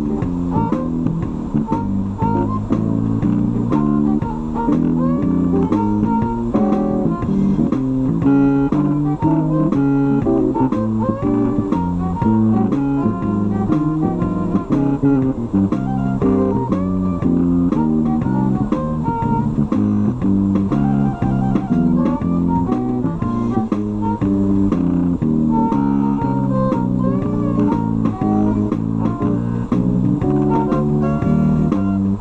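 Bowed violin playing a blues tune over a guitar and bass accompaniment.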